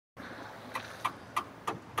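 Faint steady background noise with a run of about five light, evenly spaced clicks, roughly three a second, starting a little under halfway in.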